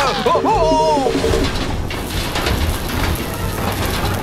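Cartoon soundtrack: background music with a wavering cry in the first second, then a dense, noisy sound effect filling the rest.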